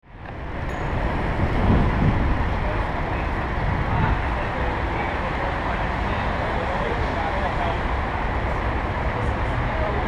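Steady city street traffic noise picked up by a handlebar-mounted camera: an even rumbling haze, heaviest in the low end, fading in over the first second.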